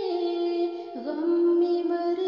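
A woman singing an Urdu devotional nazm, holding long sung notes. About halfway through the note dips briefly and slides back up into a new held note.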